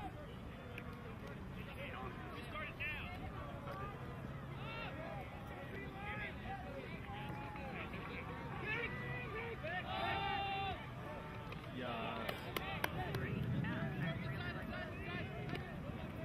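Scattered distant shouts and calls from ultimate frisbee players and sideline spectators across an open field, with a louder call about ten seconds in and a few sharp clicks a couple of seconds later.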